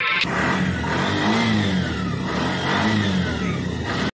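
Four-stroke auto-rickshaw engine running and revved up and back down twice, cutting off suddenly at the end.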